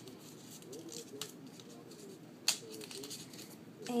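Paper being handled and wrapped by hand, with light rustles and one sharp click a little past halfway.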